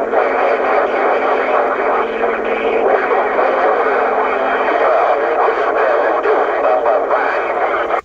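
Cobra 148GTL CB radio's speaker on receive: a steady, loud wash of static with garbled, overlapping voices from distant skip stations, none of them readable.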